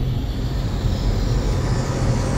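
Steady low rumble with a rushing whoosh over it, a logo-sting sound effect.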